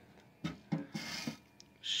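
Clear plastic hinged cover of a PV disconnect box being swung open and handled: a couple of soft clicks about half a second in, then a brief faint rub.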